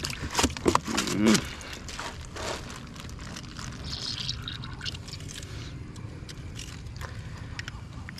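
Wet knocks and taps of a caught fish and a metal lip-grip tool being handled on the wet floor of a canoe, several sharp ones in the first second and a half, then scattered faint taps over low water sloshing.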